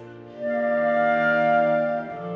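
A chamber ensemble of violin, viola, cello, E-flat clarinet and bass clarinet playing contemporary classical music. After a quiet moment, a loud held chord of several pitches comes in about half a second in and is held until near the end.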